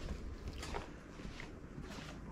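Faint footsteps, a few soft separate steps over a low background hiss.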